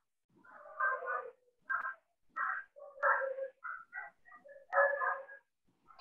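A quiet, indistinct voice in short broken bursts, heard over a video-call connection.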